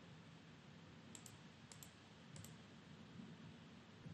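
Near silence with a few faint computer mouse clicks, clustered between about one and two and a half seconds in.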